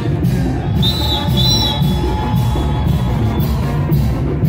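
Loud music with a steady beat, with a high whistling tone sounding twice about a second in.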